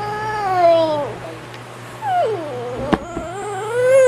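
A young child's drawn-out whining cries of protest at a handwriting exercise. The first cry falls in pitch over about a second. A second long cry, about two seconds in, dips and then rises again. There is a sharp click partway through the second cry.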